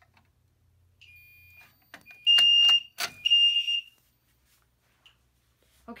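Fire alarm horns sounding briefly in walk-test mode after a Simplex pull station is key-activated. A faint steady tone comes about a second in, then two loud steady tones about a second apart, with sharp clicks between them, before they stop.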